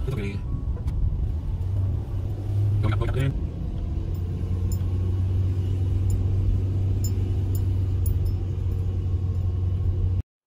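Steady low engine and road rumble heard inside the cabin of a car driving along a winding road.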